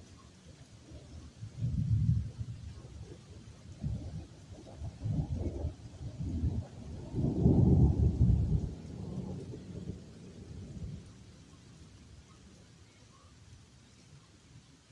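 Rolling thunder rumbling in several waves, swelling to its loudest about seven to nine seconds in and then dying away, with a faint wash of rain behind it.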